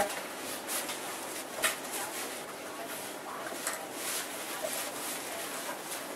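A backpack's fabric rain cover rustling and crinkling in short irregular bursts as it is pulled over and fitted around the pack.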